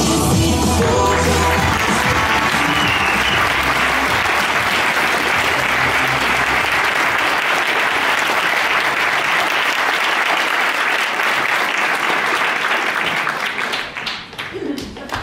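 Dance music ending about a second in, then an audience in a hall applauding steadily, the applause thinning out near the end.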